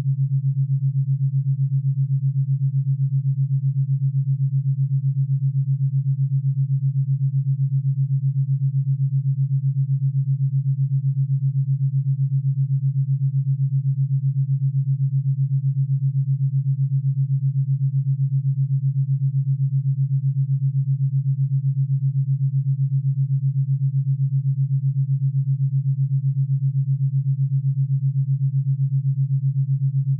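Theta binaural beat: a steady, low pure tone made of two slightly detuned sine tones, pulsing evenly at 7.83 Hz, about eight beats a second.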